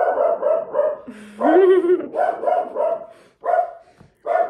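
Dog barking: a quick run of short barks, a longer call rising in pitch about a second in, then a few more short barks.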